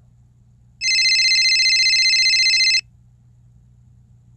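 Telephone ringing tone from a smartphone on speaker: one electronic warbling ring about two seconds long, starting just under a second in, as an outgoing call to a landline rings through.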